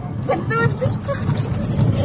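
Steady low rumble of a small vehicle driving along a gravel road, heard from inside its open cabin, with a few faint words of talk over it.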